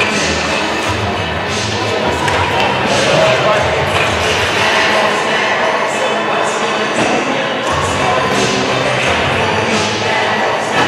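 Music playing over an ice rink's public-address system during a stoppage, mixed with crowd voices, with a few short knocks.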